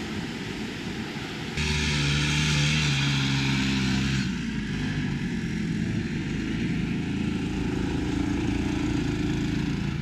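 Wind and rolling noise from a moving mountain bike, then about a second and a half in a motorcycle engine cuts in suddenly. The engine is loudest for a few seconds, then runs on steadily at a lower pitch as the motorcycle comes up the trail and stops.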